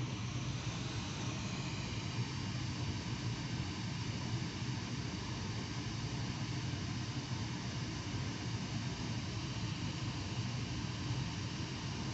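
Basement ceiling fan running: a steady whoosh of moving air over a low hum.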